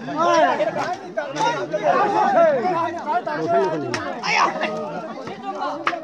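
Several people talking at once, overlapping chatter and calls, with a few short sharp clicks in between.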